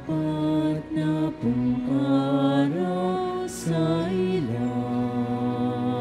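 A communion hymn sung slowly, one held note after another, ending on a long held note over the last second and a half.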